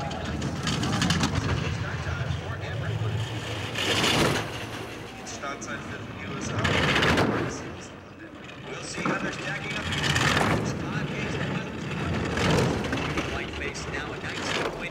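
A four-man bobsled's steel runners rushing over the ice track at speed: a continuous noisy roar that swells and fades four times, every two to three seconds.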